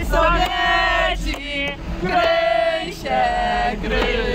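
Voices singing a song in long held notes, three of them, each about a second long, over a steady low rumble.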